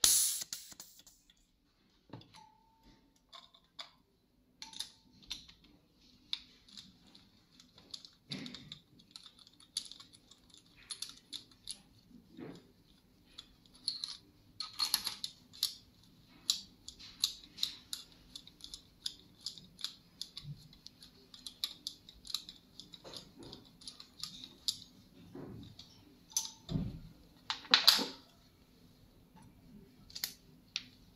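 Irregular small metallic clicks and clinks of hand tools and the compression gauge's brass adapter and hose fittings being handled on a bare diesel engine. The clicks come thicker in the second half, with a sharper clank right at the start and another near the end.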